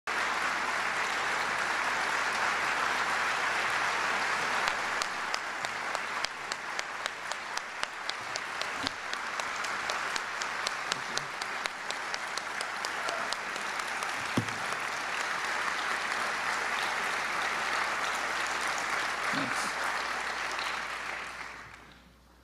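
Audience applauding steadily, with sharper single claps standing out clearly through the middle stretch; the applause dies away near the end.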